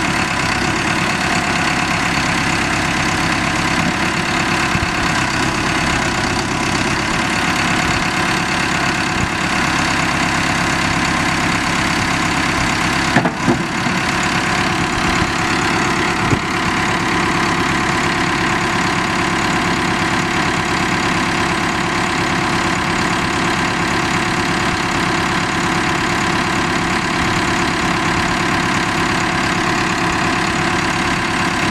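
Caterpillar 3054T four-cylinder turbo diesel of a 2004 Cat 420D backhoe running steadily at an even idle, with two brief knocks about halfway through.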